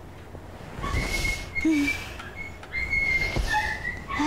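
Bedding rustling as a woman stretches and sits up in bed, with a short low hum from her partway through. A thin, high whistle-like tone keeps sounding and breaking off.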